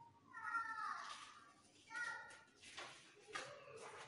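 A cat meowing faintly twice: a long call that falls in pitch about half a second in, then a short one about two seconds in, followed by a few soft knocks.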